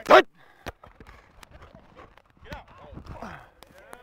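Outdoor football practice field sound: after a short shouted word at the start, distant players call out with falling shouts about midway, over a few scattered sharp knocks.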